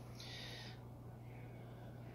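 Quiet room with a steady low hum, broken by a brief soft hiss just after the start and a fainter one a little past the middle.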